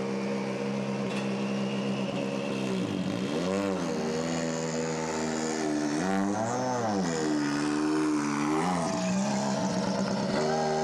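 Volkswagen Polo R WRC rally car's 1.6-litre turbocharged four-cylinder engine idling steadily, then blipped three times, each rev rising and falling back to idle within about a second.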